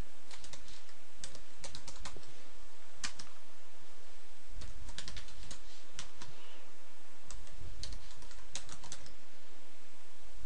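Computer keyboard typing: irregular runs of keystroke clicks with short pauses between words, over a steady hiss.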